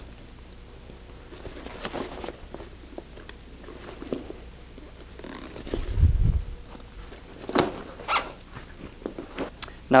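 Handling noises of an inflatable kayak's padded seat being unclipped and lifted out: rustling and scattered clicks of its straps and clips, with a dull thump about six seconds in and a couple of sharp clicks shortly after.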